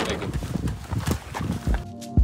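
A quick, irregular run of knocks and thumps as a fiberglass stepladder is picked up and handled. Near the end, background music with a steady drum beat begins.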